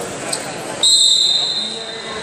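Referee's whistle: one sharp, steady, high blast of about a second, stopping the wrestling bout.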